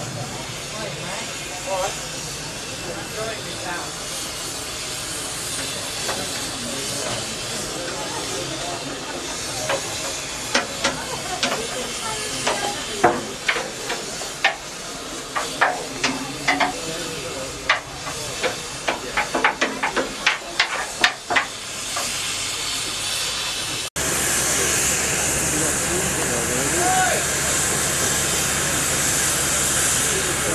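Steady hiss of steam in the cab of LMS Princess Royal class Pacific 6201 'Princess Elizabeth', with a run of sharp metallic clanks and knocks from about ten seconds in to about twenty-two seconds. After a sudden cut near the end, a louder steady steam hiss from locomotives standing in steam.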